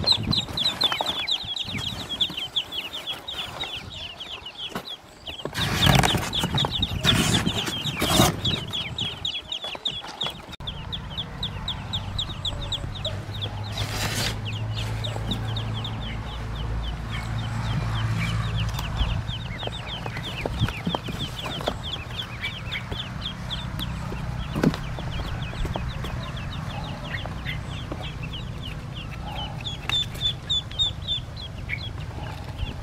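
A crowd of Pekin ducklings peeping nonstop in rapid, high cheeps. There are a few loud knocks about six to eight seconds in, and from about ten seconds on a low steady rumble sits underneath.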